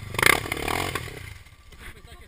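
Dirt bike engine revving hard near the start, its pitch sliding, then the sound dropping away over the second half as the bike gets farther off.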